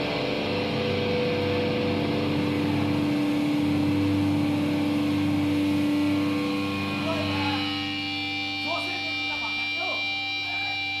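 Guitar amplifiers left humming and feeding back on stage after a song ends: several steady held tones with electrical buzz, under a wash of noise that dies down about seven seconds in. Faint voices come in near the end.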